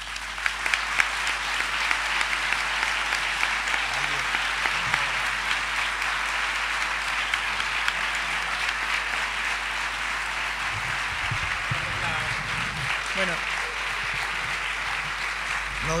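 Audience applauding steadily, with a few faint voices beneath the clapping.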